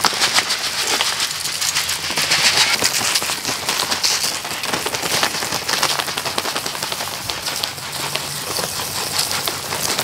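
Granular pre-emergent weed preventer (Andersons Easy Weeder) showering from the holes of its shaker bag onto gravel and wood-chip mulch: a dense, steady, rain-like pattering crackle, with footsteps crunching through the mulch.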